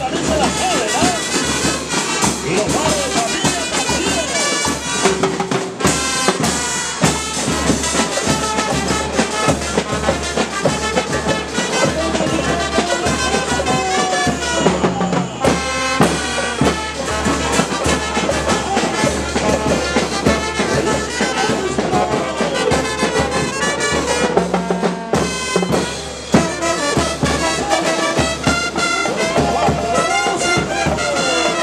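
A live school band playing: trombones, trumpets and saxophones over snare drums, a drum kit and cymbals.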